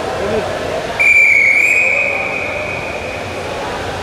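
Referee's whistle in a wrestling bout: one long blast that starts sharply about a second in, then carries on more weakly for about two more seconds. It stops the bout as the score reaches 10-0 for a technical fall. Arena crowd noise continues underneath.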